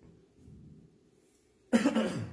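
A man coughs once, a short loud cough into his hand near the end.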